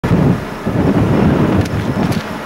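Wind buffeting the camcorder microphone: a loud, low rumbling noise that rises and falls in gusts.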